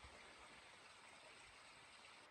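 Near silence: faint outdoor forest ambience with a steady hiss and a faint, thin, high steady tone.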